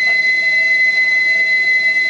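A loud, steady, high-pitched whistle tone, held on one note without wavering.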